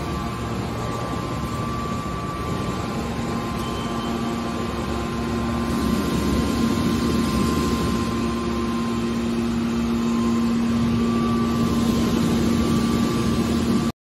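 Hydraulic power unit of a scrap metal baler, its electric motor and pump running with a steady hum while the hydraulic cylinders move the press lids; it grows a little louder about halfway through.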